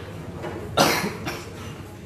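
A person coughing once, about a second in.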